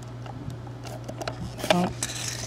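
Faint scattered clicks and taps from a Scotch ATG adhesive transfer tape gun being rolled across paper to lay down tape, with a steady low hum behind.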